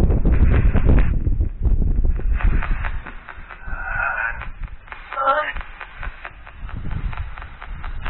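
Phone spirit-box app sweeping rapidly through radio noise: choppy, stuttering static, louder for the first few seconds, with brief voice-like fragments about four and five seconds in.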